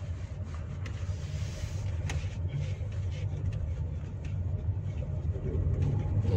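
Low, steady road and drivetrain rumble heard inside the cabin of a Toyota Innova Zenix Q Hybrid as it drives slowly, with a few faint clicks. The suspension is called quiet ("senyap").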